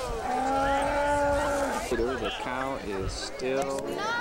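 Holstein cow mooing: one long, steady call in the first two seconds, followed by people talking.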